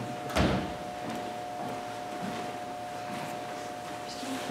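A single heavy thud about half a second in, over a steady faint hum in a room.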